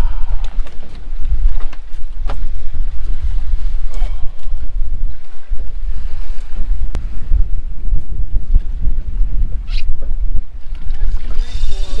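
Wind buffeting the microphone on an open boat at sea, a heavy uneven rumble throughout with small clicks. Near the end a brief high buzz sets in, the spinning reel's drag as a fish takes the jig.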